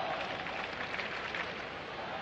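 Ballpark crowd noise: a steady murmur from the stands.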